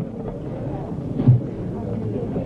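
Background murmur of voices in a bar or restaurant, with a low steady hum under it and a short dull knock a little past a second in.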